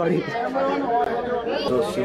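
People talking, several voices overlapping in chatter.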